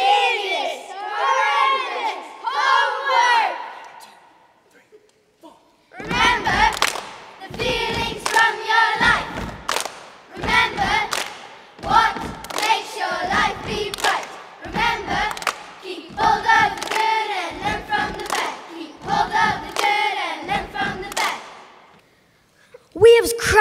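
A group of primary-school children reciting a poem together in unison, loud and emphatic, with a pause of about two seconds early on before the chanted phrases resume.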